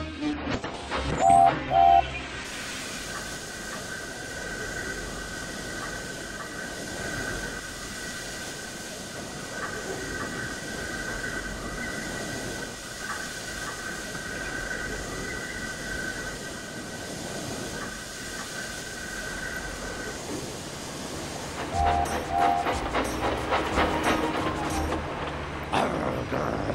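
Wooden railway freight trucks clattering and crashing loudly in the first two seconds. A long steady hiss with a high held tone follows. Clattering of the trucks starts again near the end.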